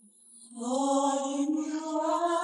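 Unaccompanied gospel singing: after a near-silent half second, a held sung note comes in and slides slowly upward in pitch.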